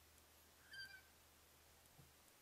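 A single short, faint animal call, about a quarter of a second long and high-pitched, roughly three quarters of a second in, over near silence.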